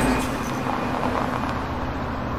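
City street ambience: a steady rumble and hiss of road traffic.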